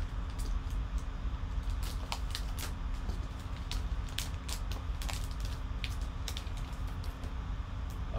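Gold foil wrapper being torn open and crinkled by hand: a scatter of short, sharp crackles over a steady low hum.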